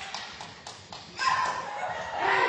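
A few light taps in the first second, then a short, loud shout from players on a sepak takraw court about a second in.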